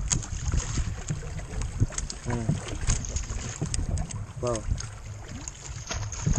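Wind buffeting the microphone over water against a small boat, a steady low rumble, with many scattered clicks and rustles as a nylon fishing net is handled close by.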